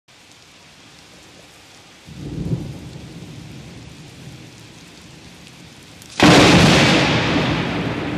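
Thunderstorm: a steady hiss of rain, a low rumble of thunder about two seconds in, then a sudden loud thunderclap a little after six seconds that slowly fades.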